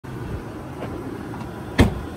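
A car door slammed shut once near the end, a single sharp thud, over a steady low background rumble.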